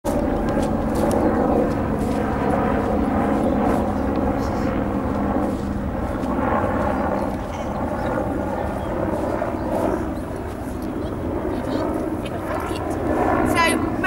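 A steady engine drone at a nearly constant pitch over a low rumble.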